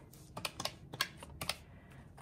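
Quick run of clicks from the round, typewriter-style keys of a desk calculator being pressed to subtract 10 from the running total.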